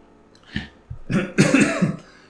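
A man coughing and clearing his throat: a short burst about half a second in, then a longer one.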